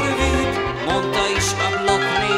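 A live band's instrumental passage led by a violin, with sliding notes about halfway through, over a steady pulse of bass notes.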